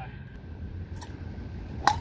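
A golf club striking a ball once near the end, a single sharp crack, over a steady low background rumble. The shot is a mishit that goes off as a little grounder.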